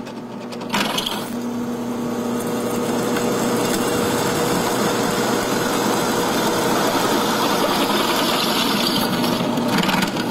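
Drill press running steadily, its countersink bit cutting a bevel into a stud hole in a steel concave horseshoe. The cutting noise starts about a second in over a steady motor hum.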